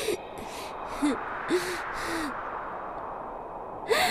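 A woman's voice making about five short, breathy vocal sounds in a row, each rising and falling in pitch, roughly one every half second.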